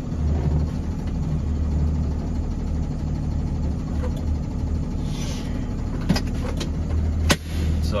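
Truck engine idling steadily, a low hum heard from inside the cab. A brief hiss comes about five seconds in, and a few sharp clicks follow near the end, the last one the loudest.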